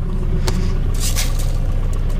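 Tractor diesel engine idling steadily, with a sharp click about half a second in and a brief rustle of grain or hand on metal.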